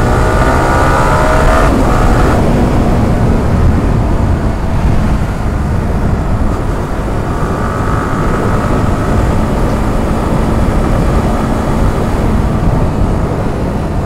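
Wind rushing over the microphone of a moving sport motorcycle, mixed with the bike's engine, whose note rises as it accelerates over the first couple of seconds.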